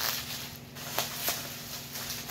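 Bubble wrap crinkling and rustling as it is pulled off a stack of plastic comic-book slabs, with a few light clicks.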